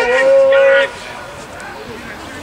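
A person's loud, drawn-out shout of "woo" that breaks off just under a second in, leaving the quieter open-air background of the pitch.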